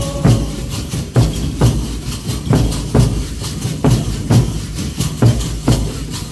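Congado procession percussion: a large hand drum beating a steady rhythm about twice a second, with shaken rattles filling in between the strokes. A sung line ends just as it begins, leaving the drum and rattles to carry on alone.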